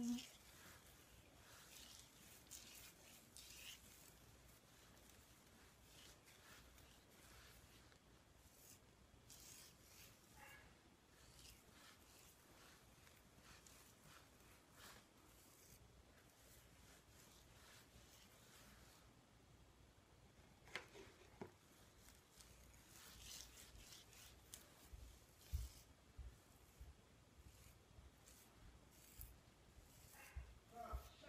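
Faint, intermittent rustling and rubbing of fingers working through coily hair slick with shea butter, finger-detangling a section. A few louder rubs and knocks come in the second half.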